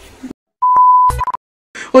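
An electronic beep: one steady mid-pitched tone lasting about half a second, followed at once by a shorter second blip with a low thud.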